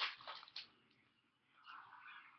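Faint rustle and slide of glossy chromium football trading cards being handled and slid across one another. A short scraping sound comes right at the start, and a softer sliding sound comes about one and a half seconds in.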